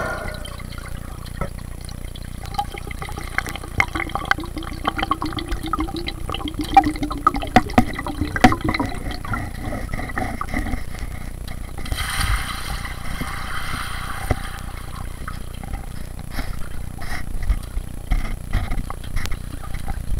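Muffled underwater water sounds picked up by an action camera submerged in a pool, with many scattered clicks and knocks. A faint low hum runs through the middle, and a brief hissing stretch comes a little past halfway.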